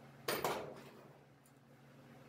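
A single brief metallic clatter about a third of a second in, dying away within about half a second, with a faint click later. A faint steady low hum runs underneath.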